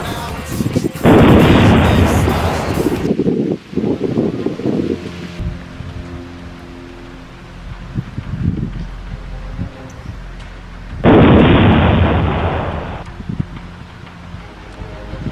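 Two loud, rumbling blast sound effects, added in editing: the first starts suddenly about a second in, the second near the end, each lasting about two seconds and fading.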